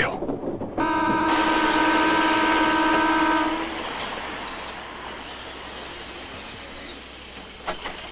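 A train's horn sounds one long steady blast, starting about a second in and lasting about two and a half seconds, over the noise of the train running. The running noise then drops and fades away gradually.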